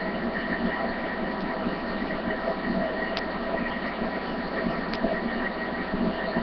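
Steady background hiss and hum from a low-quality webcam microphone, with two faint small ticks about three and five seconds in.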